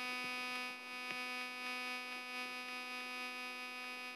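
A steady electrical buzz, one unchanging pitched hum with many overtones, with faint ticks of chalk tapping on a blackboard.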